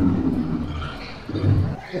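A man's low, drawn-out voice without clear words, falling in pitch at the start, with a second low, growl-like sound about a second and a half in.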